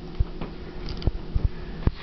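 A handful of short, light knocks and clicks from a metal pastry wheel and a wooden ravioli rolling pin being handled on a cloth-covered table, the sharpest near the end.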